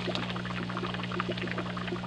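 Water trickling steadily, a continuous patter of small splashes, over a steady low hum.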